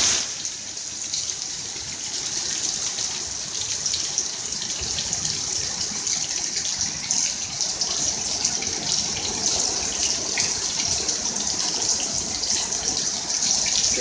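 Heavy, wind-driven rain pouring down in a storm, a loud steady hiss.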